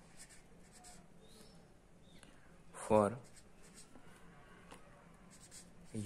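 Felt-tip marker writing on paper: faint, short scratchy strokes as letters are drawn, with one spoken word about halfway through.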